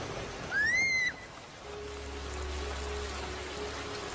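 Steady heavy rain in a cartoon soundtrack, with a brief high cry that rises and falls about half a second in. From about halfway a low sustained music note sets in under the rain.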